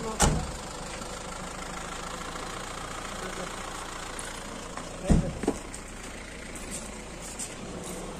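A vehicle engine idling steadily, with two short low thumps, one just after the start and one about five seconds in.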